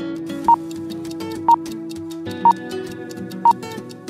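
Countdown timer beeping once a second, a short single-pitch beep each time, four beeps, over background music.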